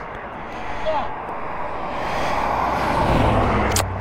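Highway traffic going past, a rushing sound that swells to its loudest about three seconds in as a vehicle goes by. A low steady hum comes in with it, and there is a single sharp click near the end.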